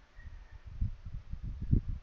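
A pause in speech filled with faint, irregular low thumps and rumble, strongest toward the end, over a light steady hiss.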